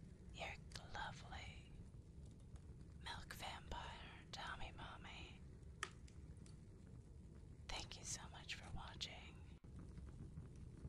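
Soft whispered speech in three short phrases, with pauses between them.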